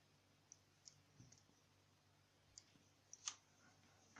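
Near silence: quiet room tone with about six faint, scattered clicks, the sharpest a little after three seconds in.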